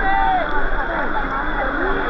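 Fast river rapids rushing steadily, with people's voices calling over the water.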